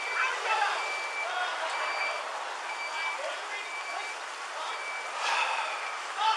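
A high-pitched electronic beep repeating about once a second, each beep short and steady in pitch, over outdoor traffic noise.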